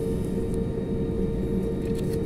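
Airliner's jet engines running steadily, heard from inside the cabin: a low rumble with a steady hum.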